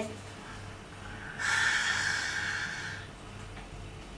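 A person imitating an animal makes one long, breathy hiss through the open mouth, a forceful exhale starting about a second and a half in and lasting about a second and a half.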